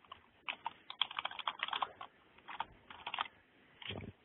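Typing on a computer keyboard: several quick runs of keystrokes with short pauses between them.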